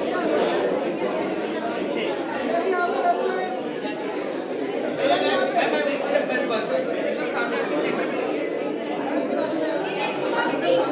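Chatter of many people talking at once, a continuous mix of overlapping voices with no one voice standing out.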